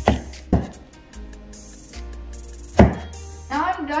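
Chef's knife chopping red bell pepper on a wooden cutting board: three sharp strikes, two about half a second apart at the start and one near three seconds in, over background music.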